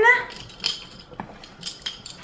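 Small metal odds and ends clinking against one another and against a glass jar as a hand rummages through them: a handful of separate, sharp clinks.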